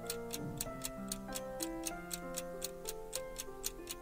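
Clock-ticking sound effect marking the last seconds of a quiz countdown timer, crisp ticks about four times a second, over soft background music with held notes.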